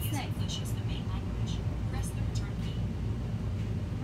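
A steady low hum, with faint speech in the background.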